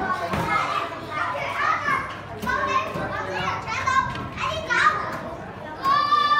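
A group of young children chattering and calling out over one another in play, with some higher, louder calls about four to five seconds in.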